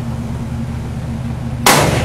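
A single gunshot about one and a half seconds in, sharp and loud, fired on the command to open fire. A steady low hum runs underneath.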